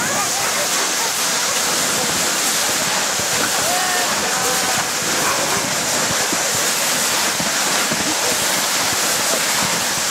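Dogsled gliding over soft, wet glacier snow: a steady rushing noise of the runners sliding through the snow, mixed with wind across the microphone.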